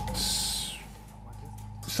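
Tail of a broadcast graphic sting: a whoosh that falls in pitch over the first second, over a held tone and low hum that fade and stop just before a man starts speaking.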